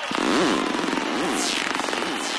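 Psytrance music in a beatless break: buzzy synthesizer sounds sweep up and down in pitch, with long falling glides up high, over a haze of crowd noise.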